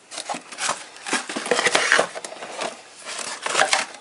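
Hands rummaging in a cardboard shipping box and pulling out a small flat item: an irregular run of rustling, scraping and sharp clicks.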